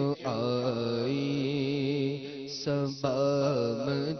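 A solo male voice sings a naat (devotional Islamic poem) into a microphone in long, held, wavering notes. There is a short breath break just after the start and another near three seconds.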